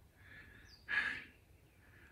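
A man's breath close to the microphone: a faint breath, then a short sharp exhale like a sigh about a second in.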